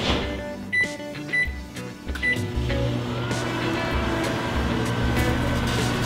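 Whirlpool microwave oven door shutting with a clunk, followed by keypad beeps, then the oven starting and running with a steady low hum from about two and a half seconds in.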